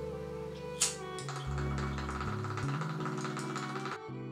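Background music: sustained chords that change every second or so, with a quick light tapping rhythm over them. A single sharp click comes about a second in.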